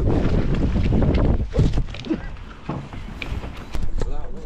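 Wind buffeting the microphone on a boat at sea, heaviest in the first couple of seconds, with scattered knocks and clicks of handling.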